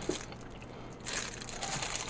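Crinkling wrapping, starting about a second in, as a wrapped mystery bag holding a miniature guitar is torn and pulled open by hand.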